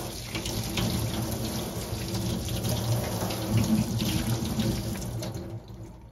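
Kitchen tap running into a stainless steel sink, the water splashing over hands rubbing a sweet potato clean under the stream. The running water fades out near the end.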